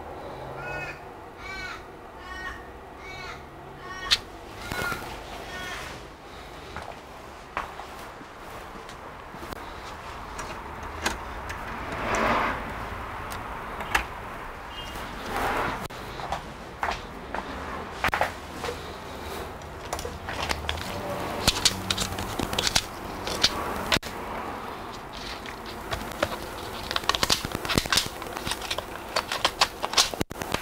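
A bird calling repeatedly, about seven short calls in the first five seconds. Then scattered clicks, knocks and rustles of hands handling the laptop, growing busier near the end.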